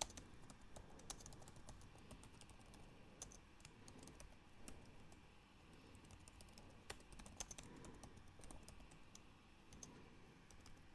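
Faint typing on a computer keyboard: scattered key clicks in short runs with quiet gaps between.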